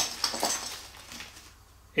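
A few light clicks and clinks of small metal spincast reel parts being handled, mostly in the first half second.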